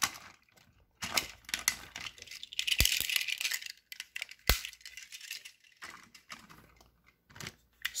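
A plastic toy train engine and its trucks being handled on plastic track: scattered clicks, knocks and light rattling as the engine is uncoupled, set down and picked up, with two sharper clicks partway through.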